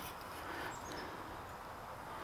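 Faint outdoor background with a few brief, faint high chirps from a distant bird about a second in.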